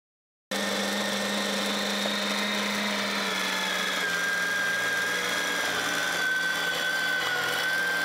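Electric meat grinder running steadily under load as venison chunks are fed in and ground, a constant high whine over its motor hum. The sound comes in suddenly about half a second in.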